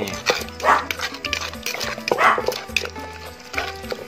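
A wooden pestle knocking and pounding tomatoes and chilli in a mortar for som tam, under background music with a steady bass pulse. Two louder, longer sounds come about a second and a half apart.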